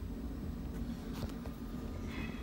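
Miller Trailblazer 325 engine-driven welder/generator running steadily with no welding load, a low steady rumble. A few faint clicks come around the middle.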